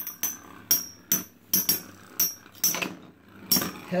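Two Metal Fight Beyblade tops, Aries and Scorpio, clashing again and again as they spin against each other in a plastic stadium. The heavy hits come as sharp metallic clacks with a brief ring, roughly two a second.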